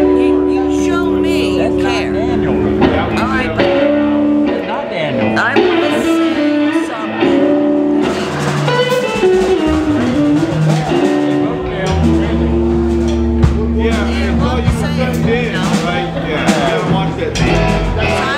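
Live band playing: electric guitars with long held notes over bass and a drum kit.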